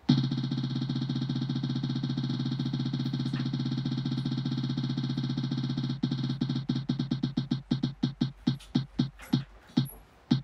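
Digital spinning prize wheel's tick sound effect. It starts as a rapid stream of ticks that blur into a steady tone, then about six seconds in the ticks separate and come further and further apart as the wheel slows toward a stop.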